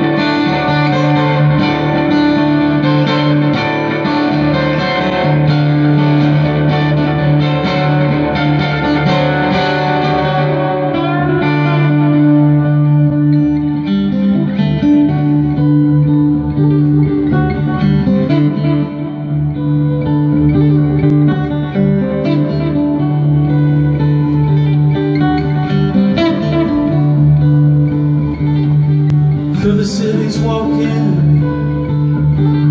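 Amplified steel-string acoustic guitar playing an instrumental passage of plucked notes, with a low note ringing steadily underneath.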